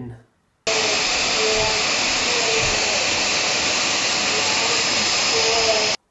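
Dyson DC35 cordless stick vacuum running steadily: an even, airy hiss that cuts in sharply under a second in and stops abruptly at the end.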